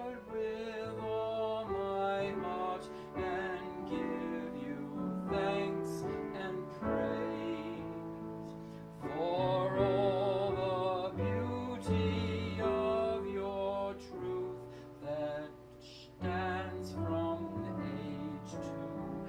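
A slow hymn played on a digital keyboard, with singing over it.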